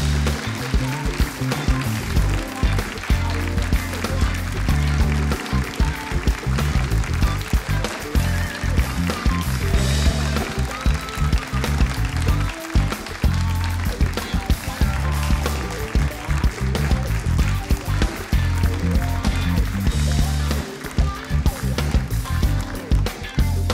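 Live band playing walk-on music with bass guitar and drums, keeping a steady beat.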